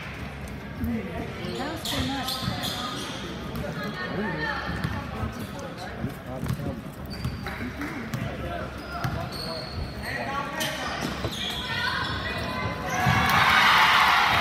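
A basketball being dribbled on a hard gym floor during play, over a mix of players' and spectators' voices. The voices grow louder about a second before the end.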